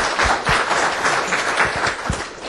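An audience applauding with dense, steady clapping.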